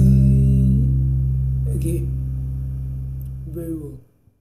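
Electric bass guitar holding one low note that rings on and slowly fades, with two brief softer sounds over it, about two seconds in and near the end; the sound cuts off sharply at the end.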